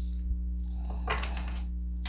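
A steady low electrical hum, with a brief rustle of tarot cards about halfway through as a deck is picked up and handled.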